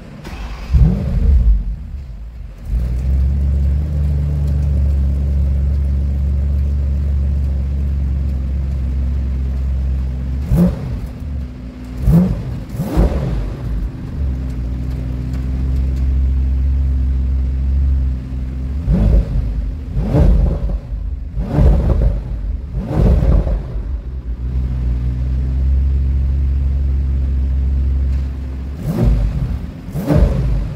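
Bentley Continental GT's 6.0-litre twin-turbocharged W12 engine starting up, with a brief flare about a second in, then settling into a steady idle. It is revved in short throttle blips: three about a third of the way in, four more around two-thirds in, and one near the end.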